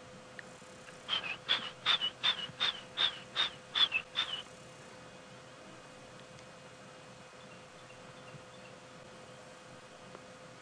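Stierling's wren-warbler calling: a run of about ten sharp, high notes, each slurring slightly down, about three a second, starting about a second in and stopping after about three seconds.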